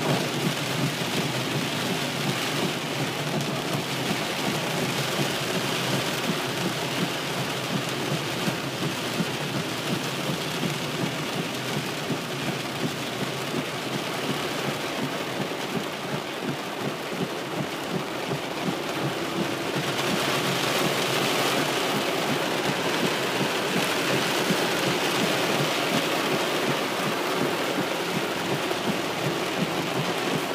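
Heavy rain falling on a car's roof and windshield, heard from inside the car: a steady, dense hiss that grows a little louder about two-thirds of the way through.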